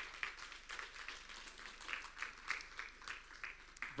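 Faint, scattered clapping from a small congregation: a loose run of irregular claps that never builds into full applause.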